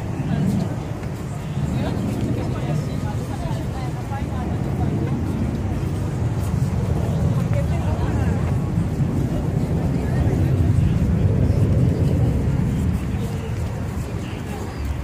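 Street ambience: the low rumble of a passing motor vehicle, swelling to its loudest near the end, with indistinct voices of people nearby.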